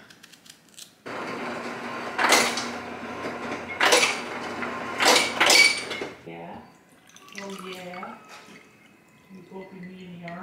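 Refrigerator door ice dispenser whirring for about five seconds from a second in, with ice cubes clattering into a glass in several loud knocks.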